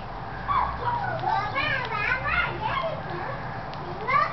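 Young baby cooing: a string of short, high vocal sounds that rise and fall in pitch, from about half a second in to about three seconds in.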